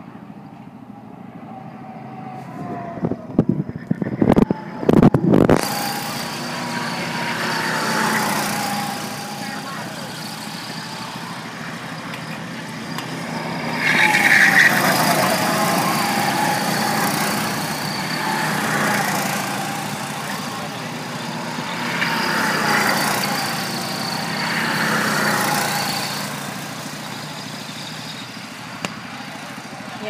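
Small gas go-kart engines running on the track, swelling and fading several times as karts pass by, loudest about halfway through. A few sharp knocks come in the first few seconds.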